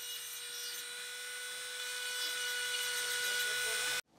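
Flexible-shaft rotary carving tool running with a steady high whine as its bit grinds at stone, growing slightly louder and then cutting off abruptly at the end.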